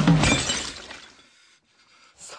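A sudden shattering crash, like breaking glass, that dies away within about a second and a half.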